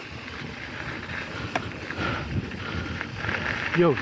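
A mountain bike rolling fast down a dirt and gravel trail: its knobby tyres run with a steady, rough rumble over loose ground, and the bike gives a few rattles, one sharp click about one and a half seconds in.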